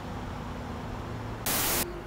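Faint steady hiss with a low hum, then about one and a half seconds in a short, loud burst of static-like white noise lasting about a third of a second: an edited-in static transition effect at a cut.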